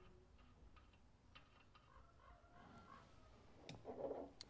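Near silence with a few faint, light metallic clicks: a small brass vacuum adapter fitting being hand-threaded into the freshly tapped port of a cast Holley 94 carburetor base. A slightly stronger click comes near the end.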